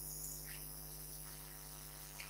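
Faint steady electrical hum with a light hiss: mains hum picked up through the microphone and sound system.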